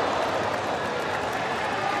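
Steady stadium background noise on the match broadcast: an even hiss with no distinct events.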